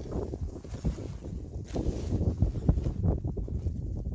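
Irregular crunching and rustling of snow and dry grass being handled as a trap set is put back together, with low wind rumble on the microphone.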